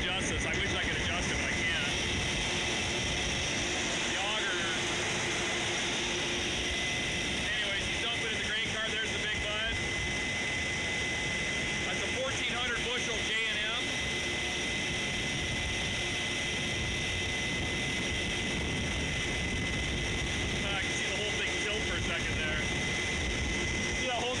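Case IH 8250 combine running steadily under load while harvesting and unloading grain on the go, heard from inside the cab. A steady high whine comes in about a quarter of the way through and holds.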